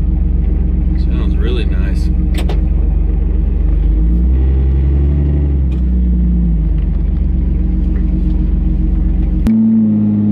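2004 Jeep Wrangler TJ with a straight-piped exhaust, heard from inside the cabin while driving: the engine runs steadily, picks up revs about four seconds in and settles back about two seconds later. The note changes abruptly just before the end.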